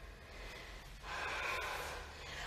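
A woman's faint, audible breath, starting about a second in and lasting about a second.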